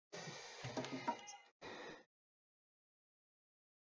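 Lumber being worked by hand: a rough scraping and rubbing on a board for about two seconds, with a few light knocks, then it stops.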